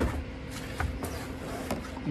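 A cardboard box being handled: a knock at the very start, then light taps and rustles of cardboard and packaging, over a steady low hum.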